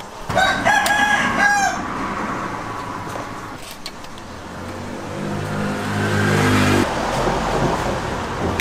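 A rooster crows once, a drawn-out cock-a-doodle-doo in the first couple of seconds. Later a motor vehicle's engine rises in pitch and loudness and cuts off abruptly near the end.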